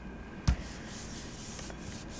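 Hands pressing and rubbing a sticker sheet down onto a paint-covered gel printing plate to pull a print, with one soft thump about half a second in.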